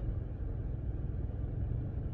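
A car's air conditioning running while parked, heard from inside the cabin: a steady low rumble.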